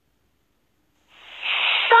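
Dead silence for about a second, then a breathy hiss swells up and runs into a high-pitched cartoon voice starting to speak at the very end.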